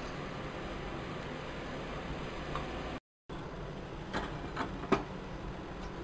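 A steady low hiss of background noise, cut off briefly about halfway through, then a few faint clicks of a metal spoon against the pressure cooker pot as the mutton curry is stirred.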